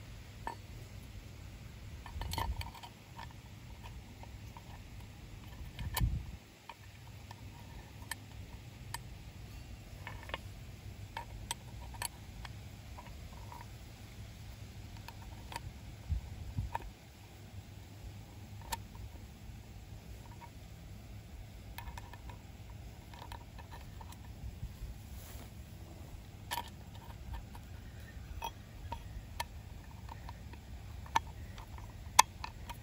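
Small metal clicks and taps from handling a centrifugal clutch's steel shoes and coil garter spring while the spring is worked into its groove, with a few louder knocks, the loudest about six seconds in, over a low steady rumble.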